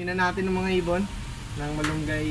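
A man's voice speaking in short phrases over a steady background hiss.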